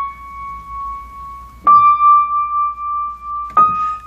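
Single grand piano treble notes, each struck and left to ring, each a step higher than the last: one is sounding at the start, the next is struck a bit under two seconds in, and another near the end. They demonstrate the singing treble overtone that the aliquot bar creates.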